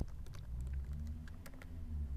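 Typing on a computer keyboard: a handful of irregular keystrokes over a low steady hum.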